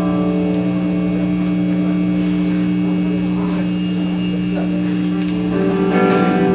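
Live heavy metal band in a quiet, sustained passage: one low chord held steady and unbroken, with fainter sounds moving over it. Near the end the rest of the band swells back in and the sound thickens.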